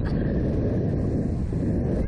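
Wind rushing over the microphone of a camera fixed to a Slingshot ride capsule as it flies through the air: a loud, steady rushing noise.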